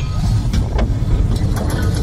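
Sound design from an animated channel intro: a loud, heavy low rumble with several sharp hits, mechanical and vehicle-like.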